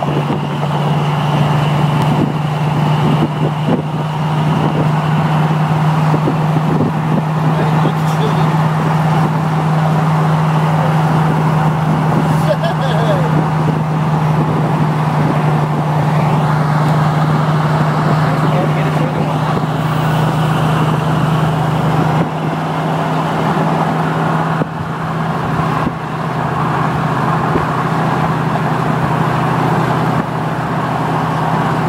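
Vehicles running at highway speed, picked up from a moving car: a steady low engine drone over constant road and wind noise.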